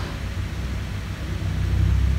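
Low steady rumble with a faint hiss, a little stronger near the end; background noise picked up by the microphone, with no distinct event.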